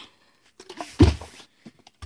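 A partly filled plastic Smartwater bottle flipped and landing on carpet with one dull thud about a second in, after a few faint handling clicks: a missed flip.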